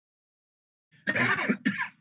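A man coughing twice over a video-call connection, starting about a second in, with his hand over his mouth.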